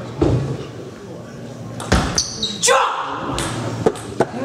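Table tennis ball knocks off paddles and the table in a short rally, with the hall echoing after each hit. A player gives a brief shout near the end as the point is won.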